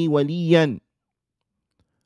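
A man speaking Arabic, reciting a line of a hadith for just under a second, then dead digital silence for the rest.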